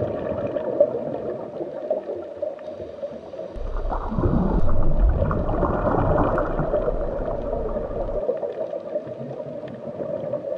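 Underwater ambience: a steady hum with bubbling and gurgling water. It grows louder and rougher, with a deeper rumble, from about a third of the way in until near the end.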